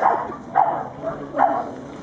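A dog barking three times in short, sharp barks, roughly half a second to a second apart.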